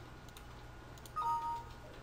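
Windows system chime as a message box pops up to report that the MD5 checksums match: two short notes, a higher then a lower, about a second in. A few faint mouse clicks come before it, over a low steady hum.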